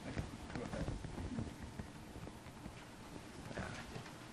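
Handling noise from a microphone stand being adjusted: scattered quiet knocks and clicks from the stand's clamp and shaft, picked up by the microphone mounted on it.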